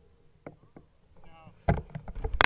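Bicycle coasting downhill with faint tyre noise and a brief wavering squeal from the brakes a little past the middle. A sharp, loud knock near the end is the loudest sound.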